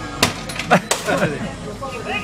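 A person's voice with two sharp clicks, one just after the start and one about a second in.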